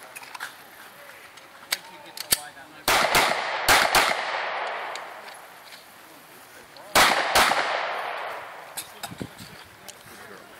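Handgun shots fired in quick pairs: two double taps about three to four seconds in, then another pair about seven seconds in, each shot followed by a long fading echo.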